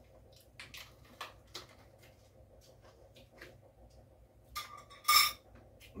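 A few faint crunches from chewing a pork scratching. About five seconds in comes a short ringing clink of cutlery against a dish, the loudest sound.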